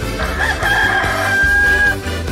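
A rooster crowing once, a long call that rises briefly and is then held for over a second, over a music bed.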